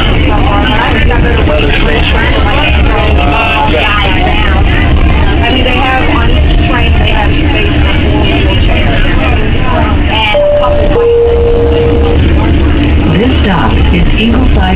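Tide light rail car running, heard from inside: a steady low rumble under indistinct voices. About ten seconds in, the onboard chime sounds two notes, a short higher one and then a longer lower one, the cue before the next-stop announcement.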